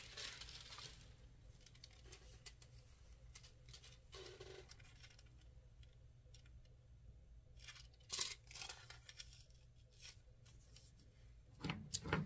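Faint rustling and crinkling of a sheet of holographic craft foil being handled and laid down, with scattered light ticks and a brief louder crackle about eight seconds in.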